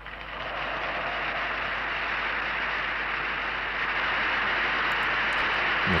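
A large crowd applauding in a 1930s speech recording played back from a computer, an even wash of sound that swells in at the start and holds steady until playback stops near the end.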